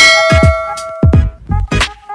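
A bell notification chime rings at the start and dies away over about a second and a half, over electronic music with deep bass drum hits that fall in pitch, several in a row.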